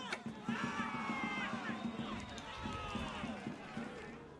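Football match broadcast audio: a TV commentator's voice over the background sound of the match.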